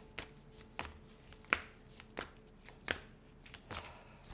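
A deck of spirit animal cards being shuffled by hand: quiet, irregular sliding and tapping of the cards, with about six short, sharper clicks spread through the shuffle.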